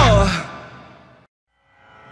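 The end of a rock song: a held note slides down in pitch as the music fades out to a brief silence. The next track then starts faintly fading in near the end.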